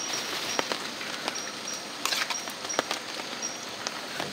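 Rainforest ambience: a steady high insect hiss with a short, high chirp repeated about every half second, and scattered light clicks of a spoon and enamel plate being handled.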